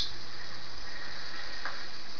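Steady hiss with a faint low hum: the background noise of a homemade voice recording.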